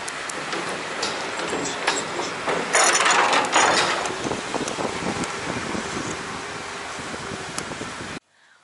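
A car driving off a ferry and along a pier, heard from inside the car: steady engine, tyre and wind noise. About three seconds in, a louder rush of noise lasts for about a second.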